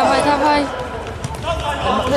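Raised voices calling out over play in a sports hall.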